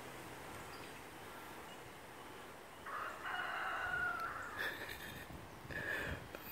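Rooster crowing once, a drawn-out crow that starts about three seconds in and lasts two to three seconds.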